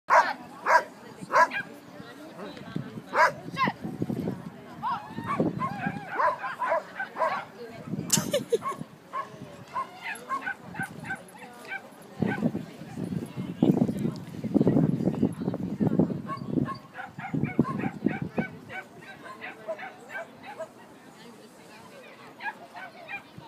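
A dog barking in short, sharp barks, several in the first few seconds and more later, with people's voices around it.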